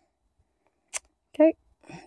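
Near silence, then a single short click about a second in, followed by a voice saying "okay".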